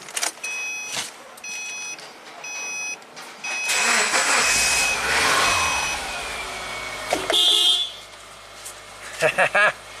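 A warning chime sounds three times, then the 2009 Subaru Forester's flat-four engine cranks and fires about four seconds in. It runs loud for about three seconds, then settles to a steady, quieter idle. The quick start shows that replacing the aftermarket crankshaft position sensor with an OEM one has cured the crank no-start.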